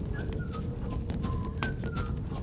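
A string of short whistled chirps, about half a dozen, each dropping slightly in pitch, over a low rumble with scattered faint clicks.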